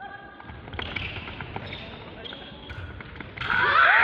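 Fencers' feet thumping and sliding on a wooden hall floor during a quick exchange. About three and a half seconds in, loud shouting voices break out, with the scoring light showing a touch.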